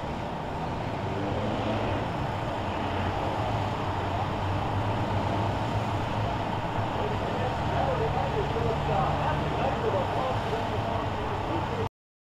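Several stock cars' engines running at low speed on a slow lap after the race, a steady low rumble. It cuts off abruptly just before the end.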